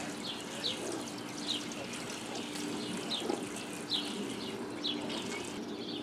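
Small birds chirping: short, high, falling notes repeated irregularly about once a second, over a steady low hum.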